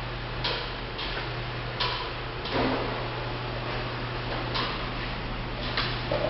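Short clicks and scuffs from someone moving about and opening a car door, over a steady low hum. The longest and fullest comes about two and a half seconds in.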